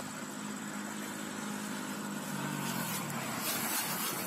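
Steady drone of a motor vehicle engine going by, its pitch falling a little past halfway through.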